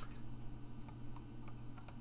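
A few faint, irregular clicks over a low steady hum during a pause in speech.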